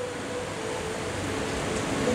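Steady hiss of room noise, with no distinct event.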